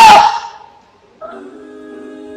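A woman's shouted word through a microphone ends and fades away; about a second in, a steady held chord of background music comes in quietly and sustains.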